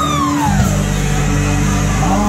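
Live country band playing. A slide guitar note glides down in pitch over the first half-second, over steady bass and guitar notes.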